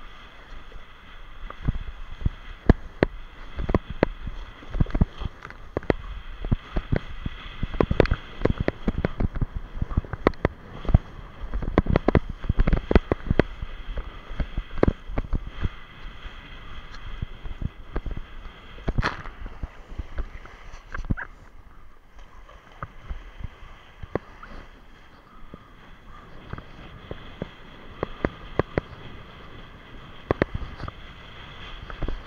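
Choppy sea water splashing and slapping against a waterproof action camera riding low on a kitesurfer, over wind rumble on the microphone. Many sharp knocks and splashes come thick and fast through the first half, with one hard hit a little before the twenty-second mark and calmer water after it.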